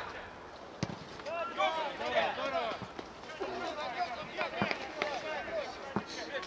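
Footballers shouting and calling to each other across an outdoor pitch, with a few sharp thuds of the ball being kicked, the clearest about a second in.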